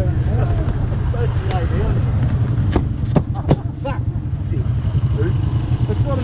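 Quad bike engine idling steadily under bits of talk, with three sharp knocks around the middle.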